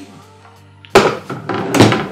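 A Bosch PKS 66 A circular saw set down on a tabletop: a sharp thunk about a second in, then handling clatter and a second knock near the end, over background music.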